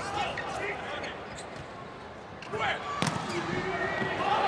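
Volleyball rally: the ball is struck several times with sharp smacks, the loudest about three seconds in, and players shout "hey" near the end.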